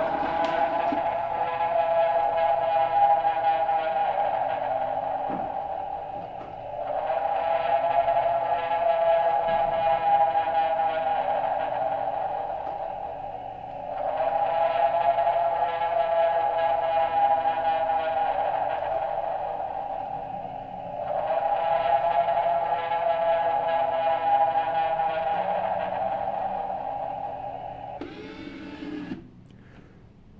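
Gemmy prototype floating-face ghost animatronic playing its built-in sound track through its small speaker after being activated by its button. The sound is musical, a phrase of about seven seconds repeated four times, and it stops shortly before the end.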